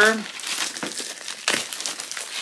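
Plastic packaging crinkling as an item is unwrapped, with a couple of sharper crackles.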